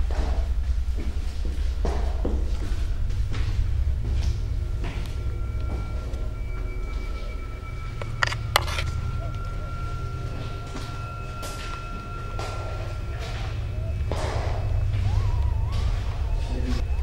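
Background music: a steady low drone with sustained high tones through the middle. Scattered thuds and knocks sound under it, with a sharp click a little past halfway.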